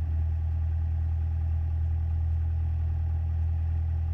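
Cessna 172SP's four-cylinder Lycoming engine running at low power on the ground, heard inside the cabin as a steady, even low drone.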